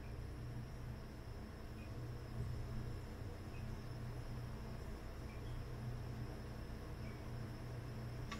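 Quiet room tone: a faint, steady low hum with light hiss and no distinct event.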